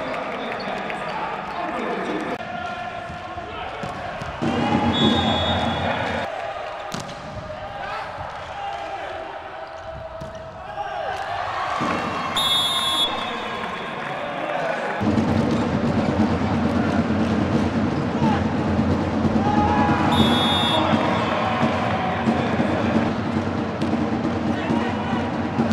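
Volleyball match sound: crowd noise and players' shouting, with the ball being struck. Two short, high referee whistle blasts sound about halfway through and near the end.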